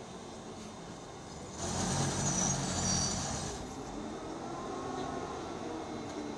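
A diesel locomotive running close by: about a second and a half in, its engine and a hiss of air swell for about two seconds and then ease off, as the replacement locomotive comes up to the train.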